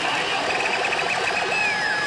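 Pachinko machine's electronic effects during its awakening (覚醒) presentation: a quick run of high beeps in the first half, then a long swoop falling from high to low near the end, over the steady electronic din of the pachinko hall.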